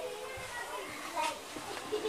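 Quiet, indistinct talking, including a child's voice, in short snatches.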